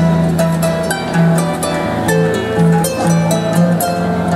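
Celtic harp being plucked, a line of low bass notes under a melody higher up, playing a pop tune.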